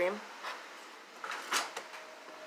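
Pokémon trading cards sliding against each other as the front card is pulled off the stack, with two short swishes about a second and a half in.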